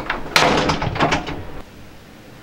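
Wooden door banging shut about a third of a second in, its sound fading away over the following second.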